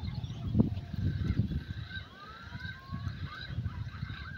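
Birds calling around a pond in short calls and rising glides, over an uneven low rumble with a dull knock about half a second in.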